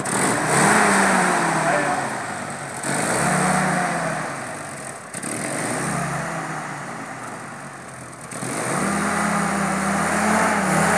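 A vintage jeep's engine running and being blipped three times, each rev swelling and falling away within a second or two. Near the end the revs rise again and hold as the jeep moves off.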